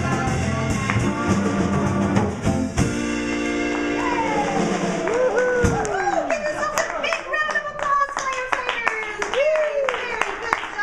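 Live acoustic guitars and drum kit play the closing chords of a children's fire-truck song, with a held final chord that stops about six seconds in. Voices wail in long pitch slides, falling and rising like a fire siren "woo". Scattered clapping begins near the end.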